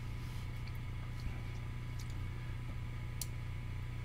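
Quiet room tone: a steady low hum with a few faint, brief ticks.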